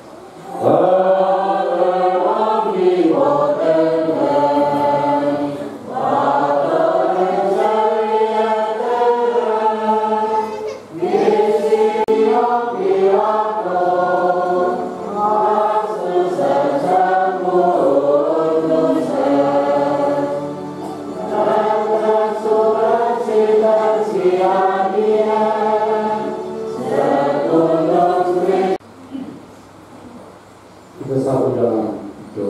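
Church choir singing a hymn in long phrases, with short breaths between lines; the singing stops about a second before the end.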